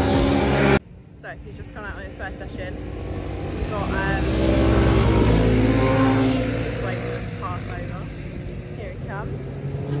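Racing motorcycles lapping a circuit on a track day, their engine note rising as they come closer and fading again as they ride away.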